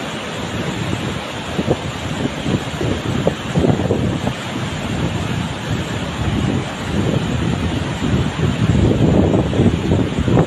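Steady rush of a tall waterfall and the white-water cascade tumbling over boulders below it. Wind buffets the microphone in irregular gusts, strongest near the end.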